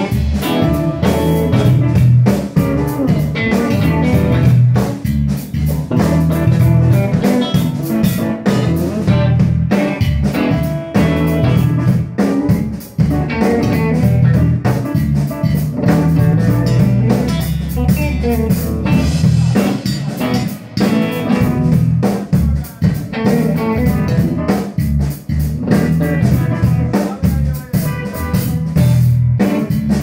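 A band playing a guitar-led instrumental passage over bass guitar and drum kit, steady and loud throughout.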